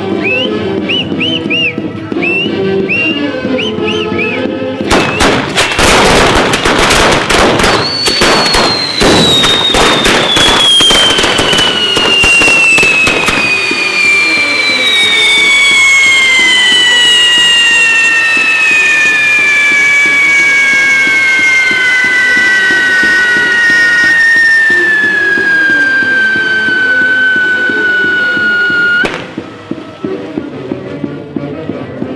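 A fireworks castle (castillo) going off. About five seconds in, a rapid string of firecracker bangs starts and lasts several seconds, then whistling charges give several long tones that fall slowly in pitch for some twenty seconds and cut off suddenly near the end. Band music plays underneath throughout.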